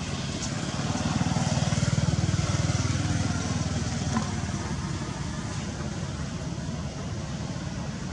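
A motor vehicle engine passing at a distance, its low, pulsing rumble swelling about a second in and fading away after the third second.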